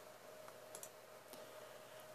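Near silence: faint room tone with a faint steady hum and a few faint clicks around the middle.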